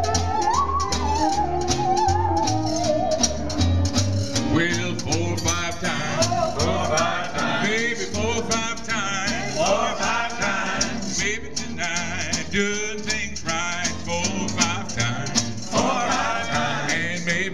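Live small-band jazz: a tenor saxophone plays a wavering melody over bass notes and a steady beat, then a man starts singing about four seconds in with the band continuing.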